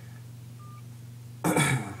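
A man clears his throat once, loudly, near the end. Earlier, a single short, faint beep sounds from the phone as the call is ended, over a steady low hum.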